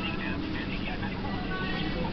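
Indistinct chatter of many voices in a busy restaurant dining room, over a steady low hum.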